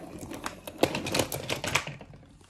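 Toy train engine pushed by hand along wooden railway track, its wheels and body clattering in a rapid run of irregular clicks, loudest a little under a second in and again near the end.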